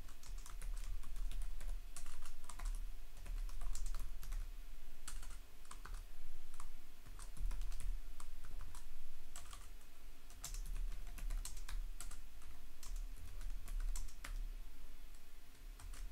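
Typing on a computer keyboard: irregular runs of keystroke clicks with short pauses between words and lines.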